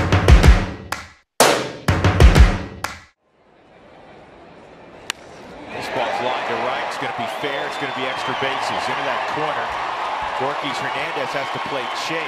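Intro music with heavy drum hits for about three seconds, stopping abruptly. After a short lull with one sharp crack about five seconds in, the steady murmur of a ballpark crowd from a game broadcast comes in.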